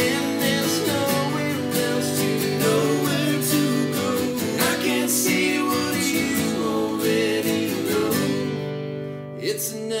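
Three acoustic guitars strummed together under singing voices in close harmony, a trio's acoustic song. The strumming and singing thin out briefly about nine seconds in.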